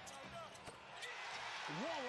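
NBA game broadcast audio: a basketball bouncing on the hardwood, with arena crowd noise swelling from about a second in as Oklahoma City makes a three-pointer, and a voice rising in pitch near the end.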